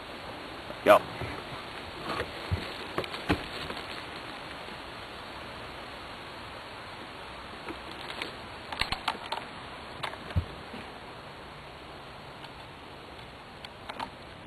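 Quiet outdoor background: a steady hiss with a few faint, scattered clicks and knocks.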